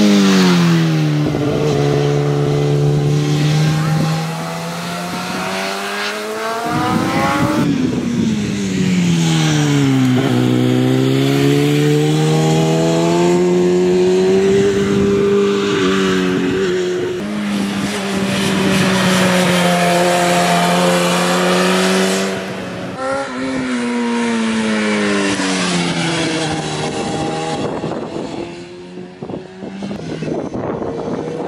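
Racing sport bike engine heard through several corners in a row: each time the pitch drops as the bike slows for the bend, then holds fairly steady on part throttle, with one slow rise in the middle. The sound changes abruptly twice where the shots change.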